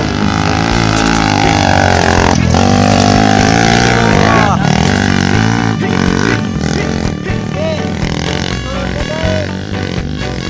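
Dirt bike engines revving on a steep hill climb, their pitch rising and falling, mixed with background music.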